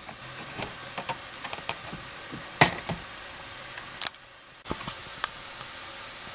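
Plastic Lego pieces clicking and clacking as the side of a toy truck trailer is opened out into a stage: a few scattered clicks, the loudest about two and a half seconds in, over a steady faint hiss.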